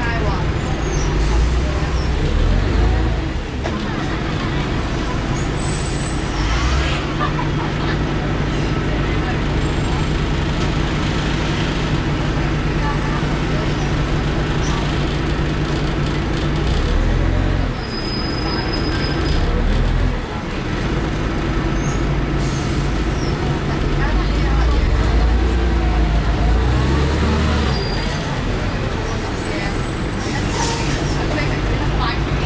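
Cummins LT10-245 diesel engine of a 1993 Leyland Olympian double-decker bus running as the bus drives, heard from inside the passenger saloon. The engine note drops off briefly a few times and picks up again, twice just past the middle, then builds louder toward the end.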